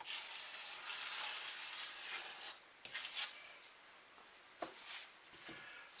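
A metal scraper blade scraping across wooden model-ship hull planking, taking off excess plastic wood putty from filled low spots. One steady scrape for about the first two and a half seconds, then a couple of short strokes around the middle, and softer handling sounds near the end.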